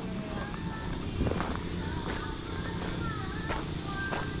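Faint background voices and music, with a few sharp steps on a gravel path.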